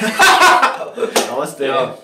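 Men's voices saying "Namastey" with light laughter, and a single sharp hand clap a little over a second in as the palms are brought together.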